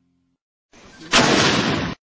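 A single artillery gun shot: a brief faint rush, then a sudden loud bang about a second in with a rumbling tail that cuts off abruptly.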